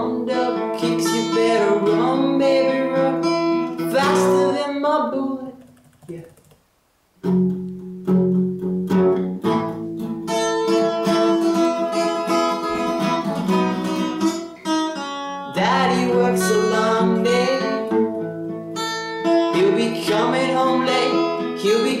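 Nylon-string classical guitar strummed with a capo, playing the song's chords, with a voice singing the melody over it at the start and again near the end. The playing breaks off into a near-silent pause about six seconds in and picks up again about a second later.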